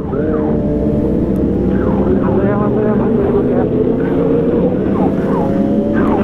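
Motorcycle engine running steadily at low speed in slow traffic, its pitch creeping slowly upward.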